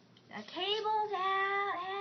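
A child's voice singing, or sing-song vocalising, a few held high notes without words, starting about half a second in and lasting about two seconds.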